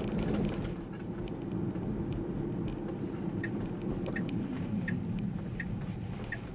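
Low, steady cabin rumble of a Tesla creeping through a turn, with the turn-signal indicator ticking evenly, about three ticks every two seconds, starting about halfway through.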